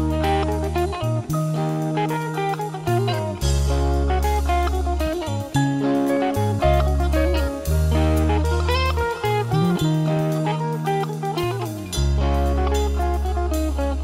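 Background rock music with electric guitar, bass and drum kit, the bass holding long notes that change about every second or two.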